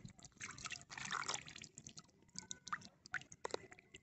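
Faint water drips and small splashes falling onto wet ground, irregular and scattered, with short gaps of near quiet between them.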